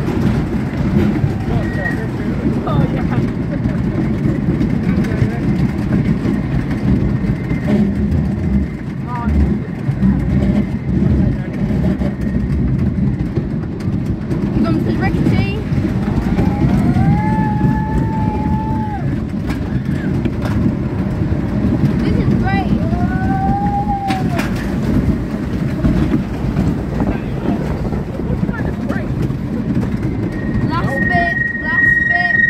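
Wooden roller coaster train running along its track, heard from on board as a loud, continuous rumble of wheels on rail. Over it, in the second half, come two drawn-out rising-and-falling cries from riders.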